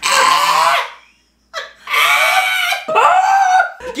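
A man's loud wordless cries of disgust at a foul-tasting food in his mouth: three drawn-out yells, with a short silence after the first.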